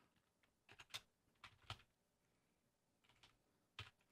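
Faint computer keyboard typing: a handful of separate keystrokes spread over a few seconds, with near silence between them.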